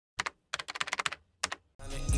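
Computer keyboard typing: a quick pair of keystrokes, a rapid run of about ten, then another pair. Music starts fading in near the end.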